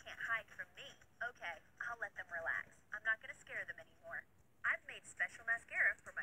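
Speech only: a voice talking in short phrases, with a thin, telephone-like sound.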